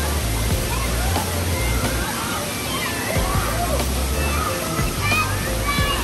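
Water pouring and splashing steadily down a water-park play structure and slide, with voices and background music with a bass line.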